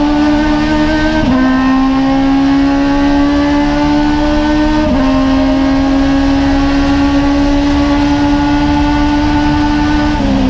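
An Aussie Racing Car's Yamaha 1300 cc four-cylinder motorcycle engine at full throttle, heard loud from inside the cockpit. The revs climb steadily, dipping briefly for two quick upshifts, about a second in and about five seconds in.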